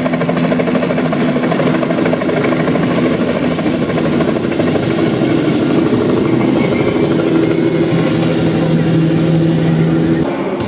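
Recorded helicopter sound effect played loud over an arena concert PA: a fast, steady rotor chop over a low hum.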